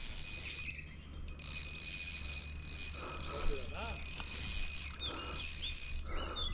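Fishing reel ratcheting faintly as a big trout pulls against the line, over a steady background hiss.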